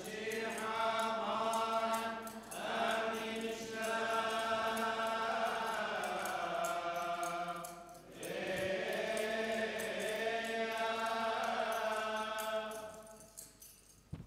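A solo male voice chanting a liturgical melody into a microphone, in long held notes with a few short breaks for breath, fading out near the end. The chant introduces the Gospel reading in a Chaldean Catholic Mass.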